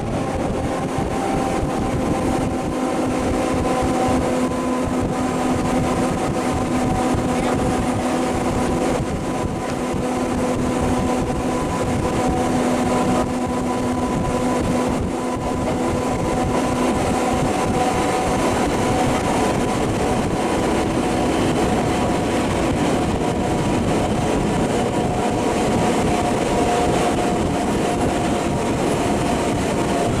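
Historic electric railcar heard from inside its passenger compartment while running at speed: a steady rumble of wheels on rail under a whine from the traction motors and gearing. The whine holds several pitches that drift slightly, one rising a little in the last few seconds.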